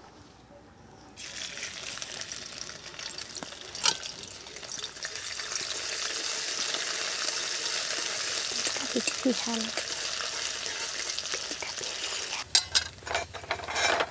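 Chopped ginger and garlic sizzling in hot oil in a kadai, stirred with a metal spatula. The sizzle starts about a second in, swells and holds steady, with a sharp tap about four seconds in and a few more taps near the end.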